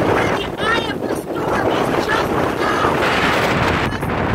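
Strong wind buffeting the microphone in a loud, steady rush, with a woman's voice shouting into it at intervals.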